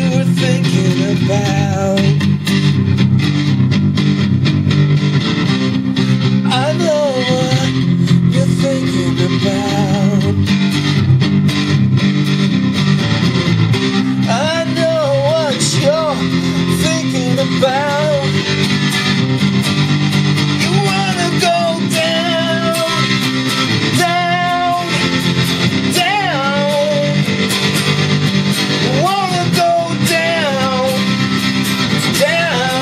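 Electric guitar strumming a three-chord progression through an amp with tremolo and reverb. Short melody phrases rise and fall above the chords.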